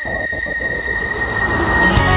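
Title-sequence sound effect: a low rumbling whoosh that swells, with a steady high tone and a slowly falling whistle over it. Music comes in just at the end.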